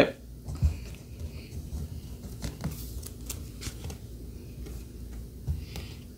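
Trading cards being handled by hand: scattered light ticks, taps and slides as cards are shuffled through the fingers and set down on the table, over a faint steady low hum.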